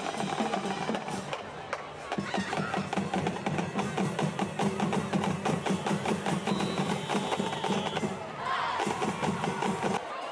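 Drums playing a fast, rolling cadence with snare and bass drum, typical of a high school marching band drumline at a football game.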